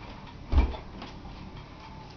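A single dull thump about half a second in, as a man hangs from the top of a wooden door trying to do a pull-up.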